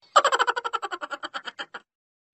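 A comic sound effect dropped into the edit: a quick run of short pitched pulses, about a dozen a second, starting loud and fading away over about a second and a half.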